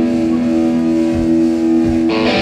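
Live rock band, instrumental passage: an electric guitar through an amplifier holds a steady sustained chord, with a couple of low drum thumps near the end.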